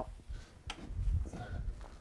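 Faint handling sounds, with one click about two-thirds of a second in, as a rotary floor machine's brush drive block is lowered onto a carpet-cleaning bonnet pad; the machine is not running.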